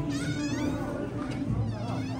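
A person's high, wavering voice, like a squeal or a drawn-out laugh, in about the first second, over quiet background music.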